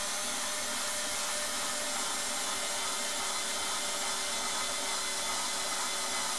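Bosch IXO cordless screwdriver's small electric motor running steadily at full speed, driving a wood drill bit through the side of a thick plexiglas (acrylic) bowl.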